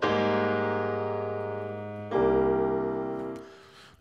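Software grand piano played from a MIDI keyboard: one chord at the start, then a second chord about two seconds in, each left to ring and die away. The piano is dry, with no reverb effect switched on.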